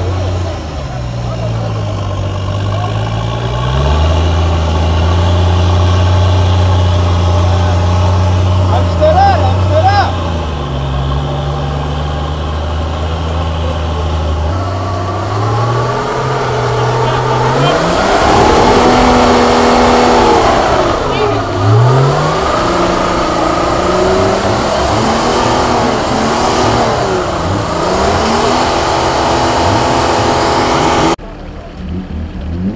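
1964 Unimog's turbo diesel engine labouring as it climbs a steep, muddy slope. For the first half it holds a steady low drone that sags in pitch now and then. From about halfway it is revved up and down again and again.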